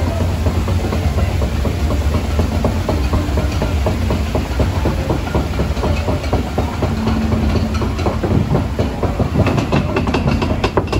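Lift conveyor of the Pirates of the Caribbean boat ride clattering as it carries the boat up the ramp: a fast, dense clacking over a steady low rumble.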